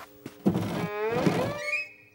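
Cartoon sound effect: a thunk about half a second in, then a falling glide made of several pitches that settles into a held tone and fades away.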